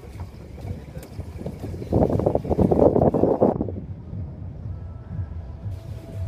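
Wind buffeting a handheld phone's microphone, with a louder gust in the middle and low bumps from the phone being handled.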